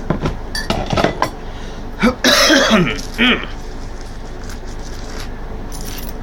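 Pocket contents being set down on hard surfaces: a run of sharp clicks and light clinks in the first second and a half. A short, rough, breathy burst a little over two seconds in is the loudest sound.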